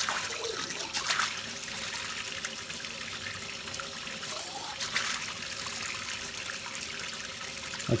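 Water running steadily from a lab sink faucet into a glass 250 mL Erlenmeyer flask and splashing into the sink basin, with a brief rising tone near the middle.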